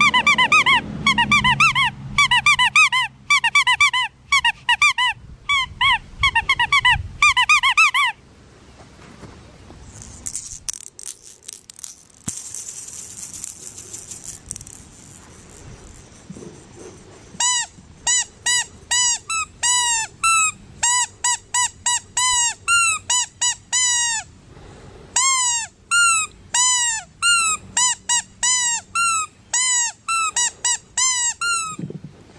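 Rubber squeaky dog toy squeezed over and over: quick runs of sharp squeaks, a pause of several seconds, then steady squeaks about two a second.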